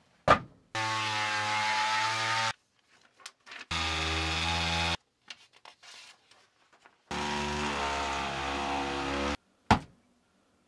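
Electric sheet sander running in three separate bursts of a second or two each, every one cut off abruptly. A sharp knock comes just before the first burst and another near the end.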